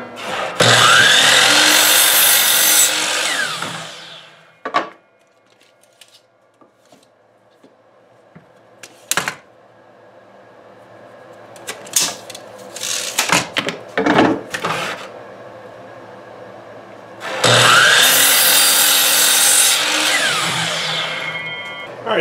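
DeWalt sliding compound miter saw making two crosscuts through pine 1x3 boards. Each time the motor spins up with a rising whine, the blade cuts for about three seconds, and the saw winds down. The first cut comes right at the start, the second about seventeen seconds in, and in between there are a few sharp knocks of wood being handled.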